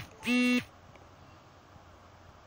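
A short voiced sound, the held end of a spoken word, in the first half-second, then only faint steady background hiss.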